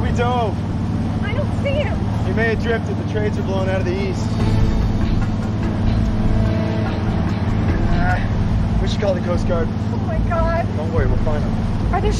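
A boat's engine runs with a steady low drone. Voices call out over it several times, near the start and again near the end.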